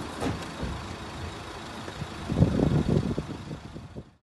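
Steady outdoor noise of a motor vehicle running close by. A louder stretch of irregular low thumps and rumbling starts about two seconds in and lasts just over a second.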